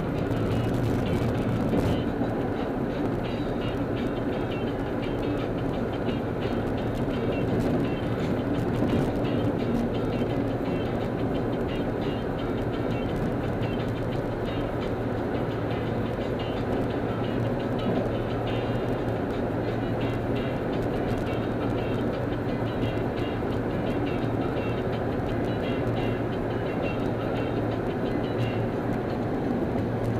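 Steady road and engine noise of a car cruising on a freeway, heard from inside the car.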